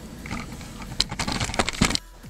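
A quick, uneven run of sharp clicks and knocks in the second half.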